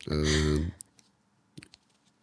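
A short, steady held vocal sound at the start, then a few light clicks from over-ear headphones being adjusted on the head.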